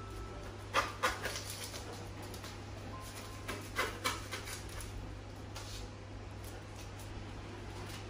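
Knife cutting through the crisp crust of a baked pizza on a parchment-lined metal baking tray: two short runs of sharp crunching crackles, about a second in and again about four seconds in, with a few fainter ones later.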